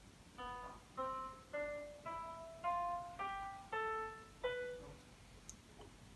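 The notation program's piano sound playing each note of a B harmonic minor scale as it is entered: eight single notes, one roughly every 0.6 s, mostly climbing step by step.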